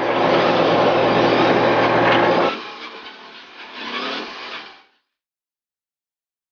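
Condux WDR 505 cable puller's engine and hydraulic winch running loud and steady under throttle, with a low hum, cutting off abruptly about two and a half seconds in. Quieter mechanical running follows, and the sound drops out entirely about five seconds in.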